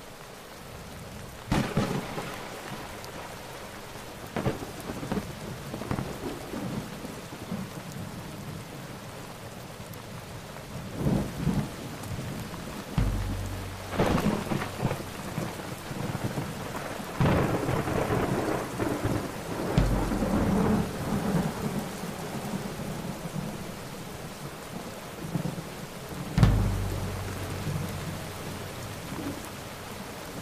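Thunderstorm: steady heavy rain with repeated sharp thunder cracks and deep rolling rumbles, the loudest crack and rumble near the end.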